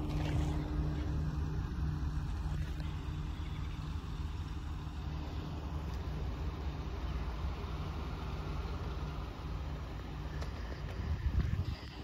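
Steady low rumble of a diesel locomotive engine running in a freight yard, briefly louder near the end.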